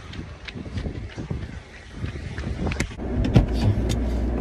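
Footsteps of someone running, with wind buffeting the phone microphone and scattered knocks from handling. About three seconds in the sound changes to a steady low hum with a few sharp knocks.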